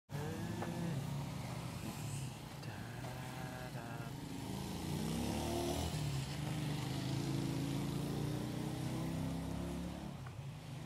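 Motor vehicle engines running, their pitch rising and falling.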